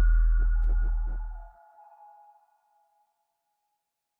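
Electronic film-soundtrack sting: a deep bass drone under high ringing tones with a ticking pulse of about three ticks a second. It cuts off abruptly about a second and a half in, leaving a single ringing tone that fades out.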